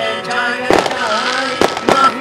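Violin played with the bow, close to a hand-held microphone: a melody line with sliding notes and vibrato. Three sharp cracks cut across it, one a little under a second in and two close together near the end.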